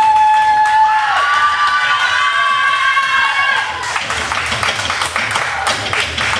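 Wrestler's entrance music starting up with a steady low beat, with long held high notes over it for the first few seconds, and the crowd cheering.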